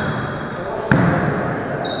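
A volleyball is hit with one sharp smack about a second in, ringing in a large echoing gym. Short, high sneaker squeaks on the wooden floor follow, over players' voices.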